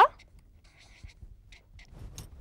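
Felt-tip marker scratching faintly on paper in a few short strokes as letters are written by hand.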